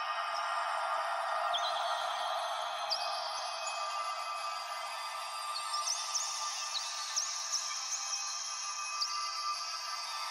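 Opening of a full-on psytrance track: a thin, filtered synth wash with no bass or beat, dotted with short, high chirping blips.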